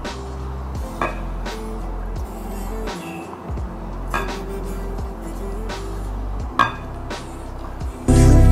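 Quiet background music with a few light clinks of a silicone spatula against a glass mixing bowl. The clinks come as wet batter ingredients are folded into flour.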